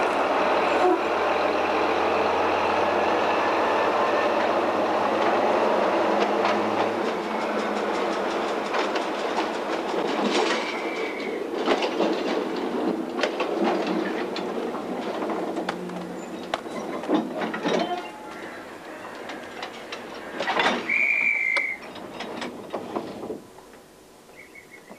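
A train running on the rails: a steady rumbling rattle, then a string of sharp clacks, with two short high-pitched tones, one about ten seconds in and one about twenty-one seconds in. The noise drops away sharply just before the end.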